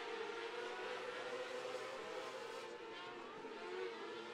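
Several 600cc micro sprint cars' engines running hard at high revs, heard faint as a layered whine of overlapping pitches that rise and fall slightly.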